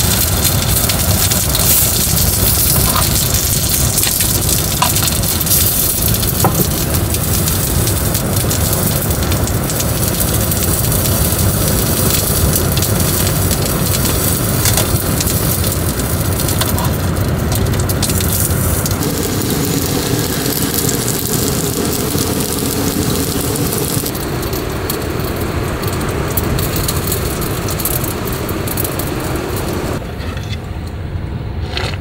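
Dumplings frying in oil in a small frying pan over a canister gas stove: a loud steady sizzle with scattered crackles. About 24 seconds in, the highest hiss dies down.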